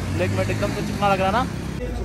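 A short phrase of a man's voice over the low, steady rumble of road traffic. The background changes abruptly near the end.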